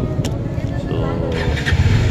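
Motor scooter engine starting about a second and a half in and running on with a steady low, pulsing rumble.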